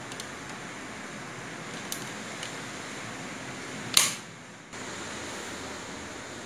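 One sharp click from a wall switch being flipped, about four seconds in, over a faint steady hiss. The mixer grinder does not start, because its overload cut-out (the small red reset button on the back) has tripped.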